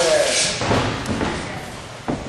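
Dull thuds of kicks and punches landing during MMA striking training, a few sharp impacts over a noisy background.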